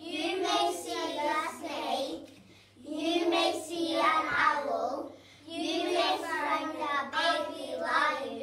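Young children's voices in unison, chanting a poem in a sing-song way, in phrases with brief pauses about two and a half and five seconds in.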